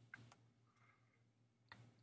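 Near silence: faint room tone with a steady hum and two faint clicks, one just after the start and one near the end.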